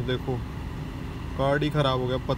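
A man talking, broken by a pause of about a second near the start, with a steady low hum of a car's air conditioning in the cabin underneath.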